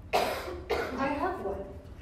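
A loud cough just after the start, with a second, rougher burst about half a second later, followed by a voice starting to speak.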